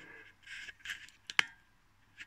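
Clicks from a laptop's keys or touchpad being worked, with one sharp click about one and a half seconds in and a couple of softer scuffing sounds before it.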